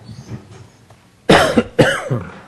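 A person coughing twice close to a microphone, two loud coughs about half a second apart starting just past halfway through.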